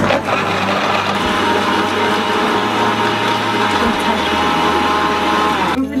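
Countertop blender running at speed, blending ice with Oreo cookies, coffee and milk; a steady, loud motor whir that winds down and stops just before the end.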